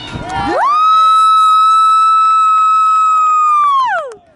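A spectator close by yelling one long, high-pitched cheer for a goal. It sweeps up about half a second in, holds steady for about three seconds and drops off at the end.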